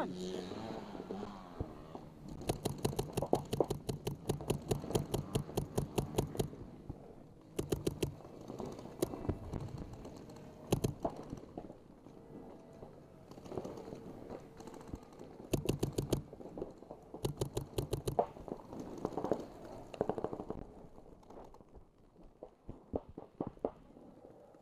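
Paintball markers firing rapid strings of shots, about eight a second, in several bursts. The longest runs about four seconds, a few seconds in, and shorter strings follow past the middle.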